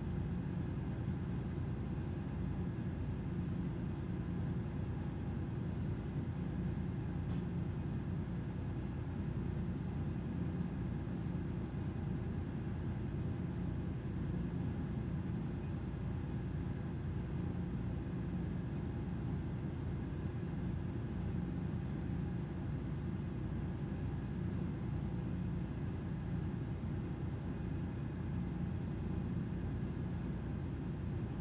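Steady low rumble with a faint constant hum, unchanging throughout: a ship's running machinery.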